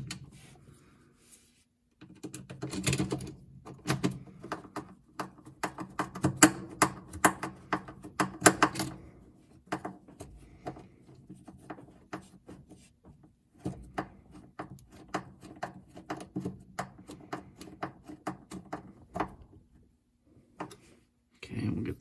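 Phillips screws being driven with a screwdriver to mount a Whirlpool top-load washer's shifter (position) switch on its transmission: quick runs of small clicks in two spells, the first from about two seconds in and the second near the end, with a lull between.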